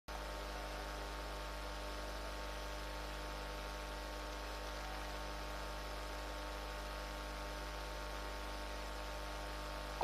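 Steady electrical mains hum with a faint hiss, constant and unchanging, on an otherwise idle audio feed.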